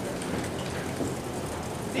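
A steady, even hiss of background noise between a lecturer's sentences.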